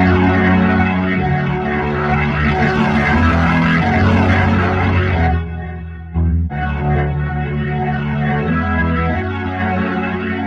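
A sustained chord loop played through a Leslie-style rotary speaker plugin (UADx Waterfall Rotary Speaker), the rotating horn and drum giving the chords a swirling, wavering sound. The chords thin out and dip in level a little past halfway for about a second, then come back.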